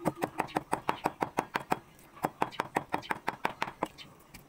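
A cleaver rapidly mincing a soft, wet mince on a thick round wooden chopping block, with even chops about six times a second and a short pause about halfway.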